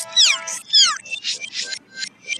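Cartoon soundtrack with its audio pitched up: two high cries, each sliding down in pitch, followed by a rapid stutter of short chopped sounds, about five a second.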